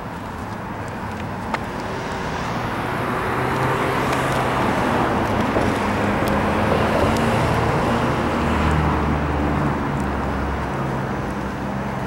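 Street traffic, with a car's engine growing louder as it passes close and easing off again near the end. A single sharp tick about a second and a half in.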